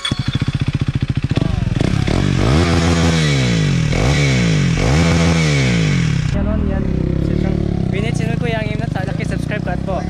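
KTM Duke single-cylinder motorcycle engine catching and being revved in a run of quick throttle blips, its pitch rising and falling about once a second. About six seconds in the revving stops and voices talk over a lower, steadier sound.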